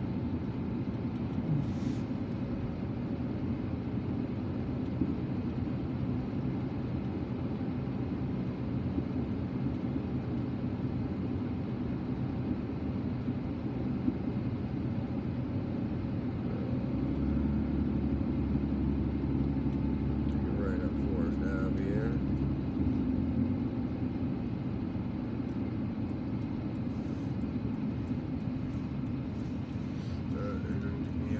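Steady road and engine noise of a moving car, heard from inside the cabin. The low rumble swells for several seconds just past the middle.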